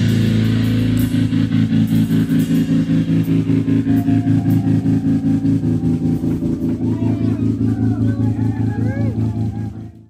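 Electric guitar and bass holding a sustained droning chord through effects pedals, pulsing rapidly at about seven to eight throbs a second, cut off at the very end.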